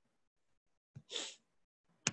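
One short, audible breath from a person, about a second in, just after a faint click; otherwise near silence.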